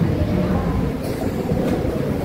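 Steady low rumble of background room noise, without speech.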